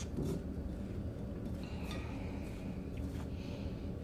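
Faint, soft rustling of hands working chicken pieces through a bowl of seasoned flour, in a few short patches over a low steady hum.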